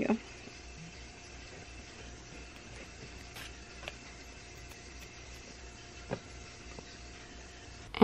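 Quiet room tone with a steady low hum, and a few faint, short taps from small handling at a workbench.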